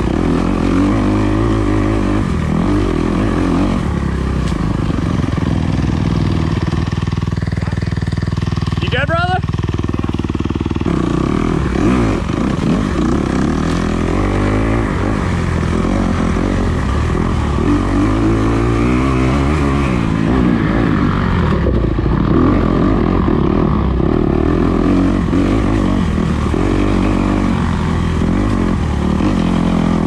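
Dirt bike engine revving up and down as it is ridden along a woodland trail, the pitch rising and falling with the throttle, with a steadier stretch near the middle. A short rising squeal about nine seconds in.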